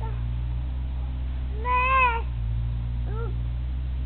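An animal crying out twice: a longer call that rises and falls in pitch about two seconds in, then a shorter, fainter one a second later, over a steady low hum.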